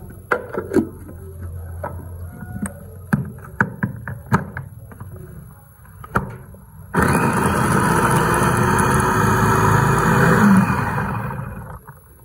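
Sharp clicks and knocks as things are dropped into a stainless steel chopper bowl and its motor head is fitted. Then the electric food chopper starts suddenly about seven seconds in, runs steadily for about four seconds while mincing beef with fried shallots and garlic, and winds down near the end.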